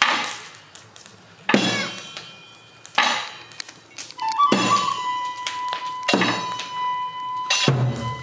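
Tsugaru kagura accompaniment: ringing metallic percussion struck slowly, about once every second and a half, each strike fading away. A transverse bamboo flute holds a high note from about four seconds in. Low drum beats come in near the end.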